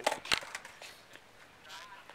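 Two sharp clacks of a skateboard on concrete, about a third of a second apart, then skateboard noise in the distance.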